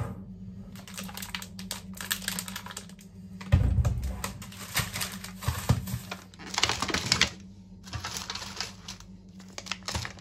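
Groceries being unpacked onto a countertop: plastic packaging crinkling and rustling, with tubs and packs set down in irregular clicks and knocks and one heavier thump about three and a half seconds in.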